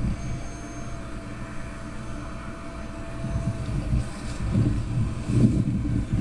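Gusty wind rumbling on the microphone, with the faint, steady whine of a small electric RC plane's motor and propeller in the distance, which fades out about halfway through.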